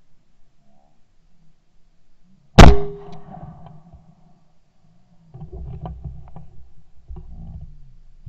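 A single very loud shot from a Yildiz Elegant A3 TE Wildfowler 12-gauge side-by-side shotgun, fired at a clay, with a short ringing tail. A couple of seconds later comes a low rumbling with scattered clicks.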